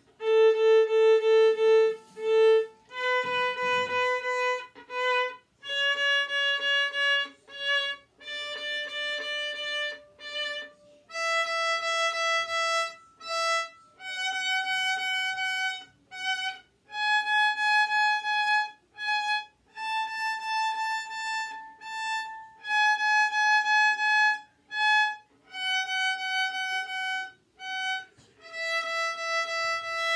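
Solo violin playing a one-octave A major scale, climbing step by step from A up to the A an octave higher and starting back down. Each note is bowed as a quick group of short repeated strokes in the 'chocolate quente' (hot chocolate) rhythm pattern.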